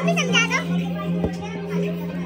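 Children's excited high-pitched voices over background music with a steady held note; the voices are loudest in the first half-second.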